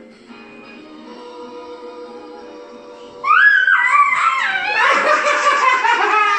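Soft background music, then about three seconds in a small child's loud, high-pitched squealing laughter over it.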